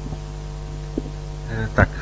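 Steady low electrical hum, like mains hum through a sound system, during a pause in the talk. A man says one short word near the end.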